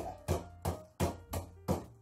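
Wooden pestle pounding walnuts and pecans through a plastic bag on a countertop, crushing them, with regular knocks about three a second.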